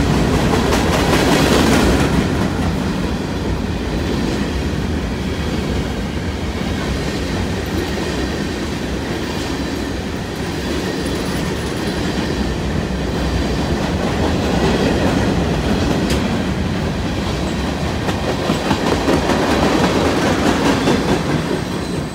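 Canadian National freight train's covered hopper cars rolling past, their wheels running steadily on the rails. The sound falls away near the end as the last car clears.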